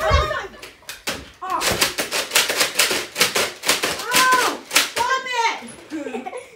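Boys' wordless vocal exclamations, with two rising-and-falling calls in the second half, after a stretch of rapid clattering.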